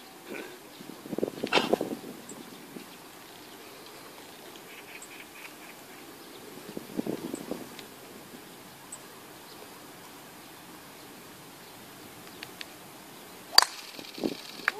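Quiet open-air golf-course ambience with faint murmurs from spectators, then shortly before the end a single sharp crack: a driver striking a golf ball off the tee.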